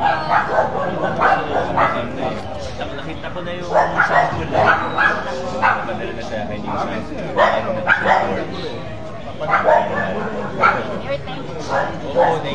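Several people talking at close range, in a lively back-and-forth conversation.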